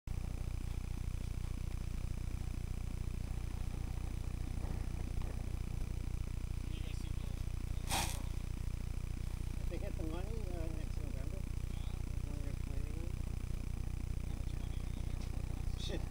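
A steady low rumble throughout, with one sharp click about halfway and faint voices talking a couple of seconds later; a man says a short word at the very end.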